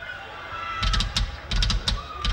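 Metal drum kit played loosely through a festival PA: a few groups of kick drum thumps with sharp snare and cymbal strikes, starting almost a second in, over a thin held high tone.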